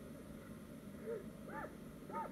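Faint, short crow-like calls, two or three of them from about a second in, over a quiet low background.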